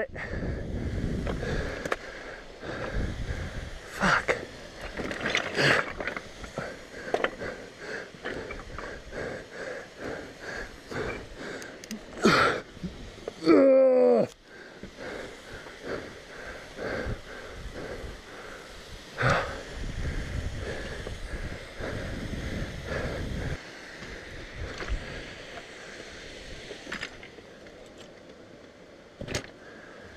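Hard breathing and a drawn-out groan with falling pitch about halfway through, from a rider straining at a fallen dirt bike on loose scree. Scattered knocks and clatter of rocks and the bike are heard over wind.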